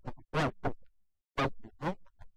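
A man's voice talking in short, choppy fragments that cut off abruptly into dead silence, with a silent gap of about half a second in the middle.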